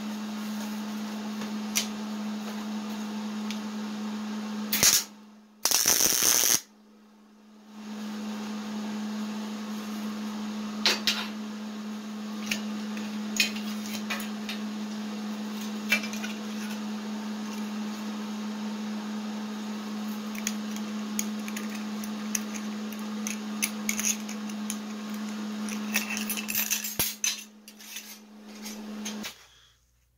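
A small motorised tool with a solid diamond bit runs steadily, grinding the glass wire channel of a crystal chandelier arm back round, with a scratchy grinding sound and scattered clicks. It stops about five seconds in, with a brief loud rush of noise, starts again a couple of seconds later, and cuts off just before the end.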